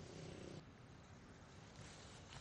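Near silence: faint low background noise in a pause between narrated lines.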